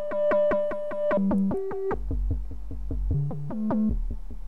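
Buchla 200e modular synthesizer playing an FM patch on sine oscillators. A sequenced note pattern steps the pitch up and down several times, while the FM timbre pulses separately about seven times a second.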